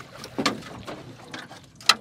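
A few sharp knocks and splashes against a small metal johnboat as a trotline is pulled in by hand, the loudest just before the end.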